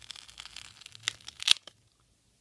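A glued-on Blu-ray case being ripped free of very sticky glue: a crackling, tearing sound of glue and plastic parting, with two sharp snaps about a second and a second and a half in as it comes loose, then it stops suddenly.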